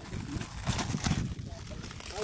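Clear plastic wrap crinkling and rustling as it is pulled off a whole fish, with irregular crackles and handling clicks, busiest around the middle.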